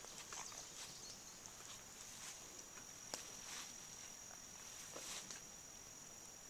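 Faint, steady, high-pitched insect chorus in the woods, with a few soft scattered clicks, the sharpest a little after three seconds in.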